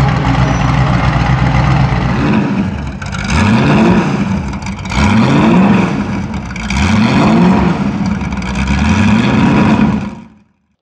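Ford GT40 Mk1's small-block V8 idling on open race exhaust, then blipped three times, the pitch sweeping up and dropping back about every two seconds.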